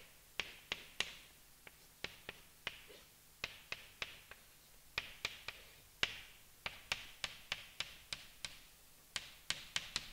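Chalk writing on a blackboard: a long, irregular run of sharp taps and short scratchy strokes as letters and symbols of a chemical formula are chalked.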